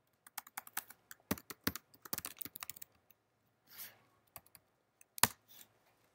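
Typing on a computer keyboard: a quick run of key clicks for about three seconds, then a short soft hiss and a few scattered keystrokes, the loudest a little after five seconds in.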